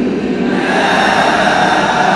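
Many voices sounding at once, a steady dense blend with no single voice standing out, in a large hall. This is typical of a class of students reciting together after the teacher's line.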